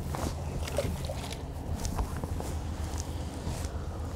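A boat's motor running with a steady low hum, with light clicks and taps of tackle being handled on the deck.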